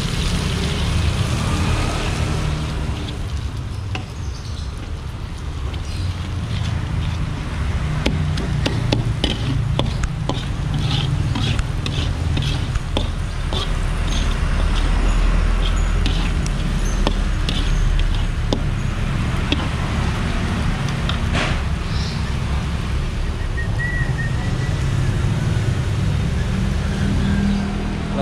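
Spice paste with shallots and bay leaves being stir-fried in an aluminium wok, the metal spatula repeatedly scraping and clicking against the pan, most busily through the middle of the stretch. A steady low rumble runs underneath.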